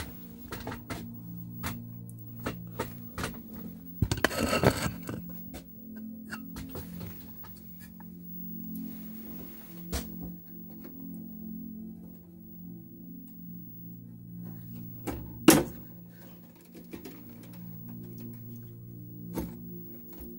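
Clicks, knocks and a brief scraping rustle as the hinged circuit-board chassis of a Philips KT3 portable TV is handled and swung down. One loud thunk comes about fifteen seconds in.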